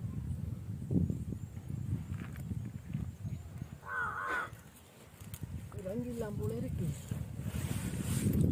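Low, irregular rumbling noise on the microphone, with a short higher pitched call about halfway through and a brief low voice sound a couple of seconds later.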